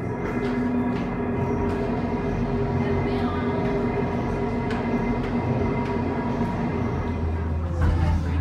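The Incline Railway's cable-hoist machinery running: a large electric motor and its gearing turning the cable wheel, giving a loud, steady hum with a whine held on several fixed pitches. Near the end it gives way to a deeper rumble.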